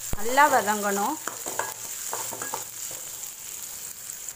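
Chopped onion, curry leaves and chillies frying in oil with a steady sizzle, while a metal spoon stirs them around a metal kadai with short scrapes and clicks against the pan.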